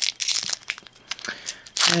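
Foil wrapper of a Magic: The Gathering booster pack crinkling and tearing as it is opened by hand, with a loud burst of crackling near the end.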